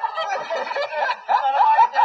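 A person's voice making a high, rapidly broken cackling sound, a comic vocal bit.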